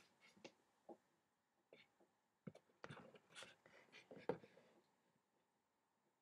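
Faint scrapes and taps of a steel palette knife working oil paint: a few scattered strokes, then a busier run from about two and a half seconds in, the loudest near four seconds in.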